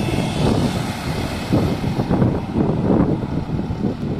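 Wright StreetLite single-deck diesel bus passing close by and pulling away up the road, a steady loud rumble of engine and tyres, with a car passing close behind it near the end.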